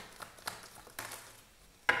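A deck of fortune-telling cards being shuffled by hand: a few light card clicks and taps, the sharpest just before the end.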